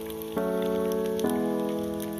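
Sustained keyboard chords of background music, moving to a new chord twice, over a light crackle of pork belly sizzling in hot oil.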